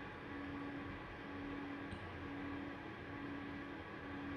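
Faint room tone: a steady hiss with a low hum that drops out briefly every second or so.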